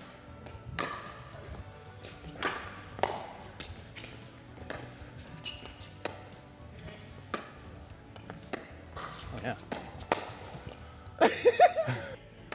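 A pickleball rally: sharp hits of the plastic ball off sandpaper-faced paddles and bounces on the court, coming irregularly about every second or so.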